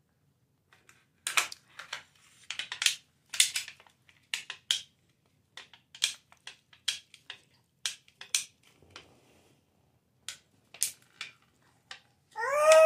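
Clear plastic candy packaging crinkling and crackling as a toddler handles it, in irregular bursts of sharp crackles with short pauses.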